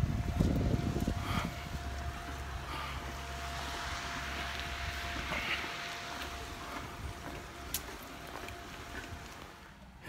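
Wind buffeting a phone microphone on a moving bicycle. It is heaviest in the first couple of seconds and then eases off, with a faint steady tone underneath.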